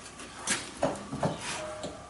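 A few faint, short knocks and clicks of hand-handled metal fittings, spaced irregularly through a quiet stretch, as the centrifuge is being readied to start.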